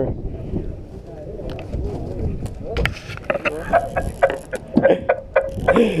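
Steady low rumble of the fishing boat and the sea, with scattered sharp clicks and knocks from fishing tackle being handled in the second half, and faint voices in the background.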